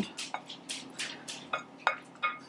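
A spoon stirring chopped moss into yogurt in a glass bowl: a quick, uneven run of scraping clinks against the glass, about three to four strokes a second.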